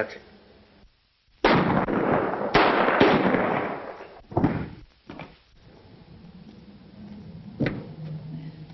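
Two gunshots about a second apart, each loud report trailing into a long noisy decay, followed a few seconds later by a single sharp crack near the end.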